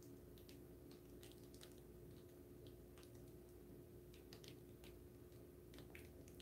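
Near silence: faint room tone with a steady low hum and a few faint, scattered ticks.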